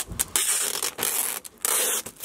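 Packing tape being pulled off a hand-held tape-gun dispenser in four or five quick, hissing pulls, laid onto a plastic tarp.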